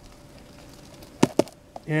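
A palm seedling's root ball being worked out of a half-gallon nursery pot: two quick knocks close together a little over a second in, against quiet.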